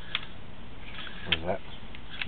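A brief fragment of a person's voice about one and a half seconds in, over a steady background hiss, with a couple of sharp clicks.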